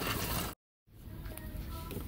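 Faint background music over low store ambience, broken by a sudden dead-silent dropout of about a third of a second just after half a second in, then resuming faintly.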